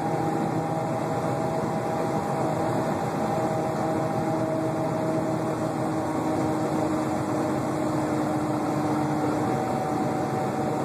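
Semi truck cruising, heard inside the cab: a steady diesel engine hum with several held tones over an even rush of tyre and road noise.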